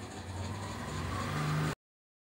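A low, steady motor or engine hum with a faint hiss; a steadier, higher hum joins near the end before the sound cuts off suddenly.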